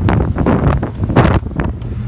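Strong wind buffeting the microphone in uneven gusts, heavy in the low end.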